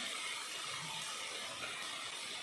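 Chopped onions and curry leaves sizzling steadily in hot oil in a pan.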